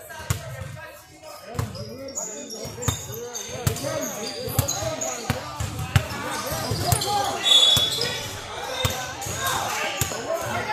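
A basketball dribbling and bouncing on a hardwood gym floor, with players' voices calling out and short high squeaks, in a large echoing gym.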